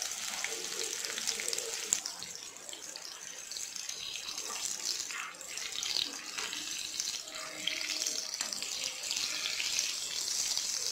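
Battered chilli fritters deep-frying in hot oil in a wok: a steady, crackling sizzle as more battered pieces are lowered into the oil.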